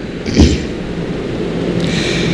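A pause in Quran recitation over a stage microphone: a short, sharp intake of breath close to the microphone about half a second in, with a low thump, over steady low background noise.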